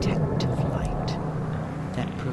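A voice speaking over soft background music.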